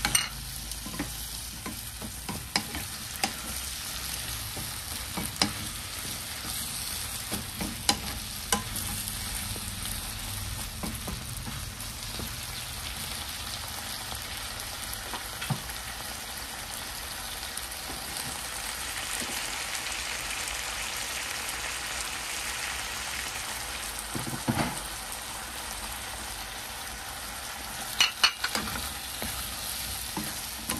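Chicken, potato and bell pepper sizzling steadily in a pan while a wooden spatula stirs them, with scattered knocks of the spatula against the pan and a quick cluster of knocks near the end.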